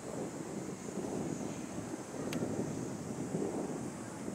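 Wind buffeting the microphone, in an uneven, gusting rumble, over a steady high hiss. A single faint click comes a little past two seconds in.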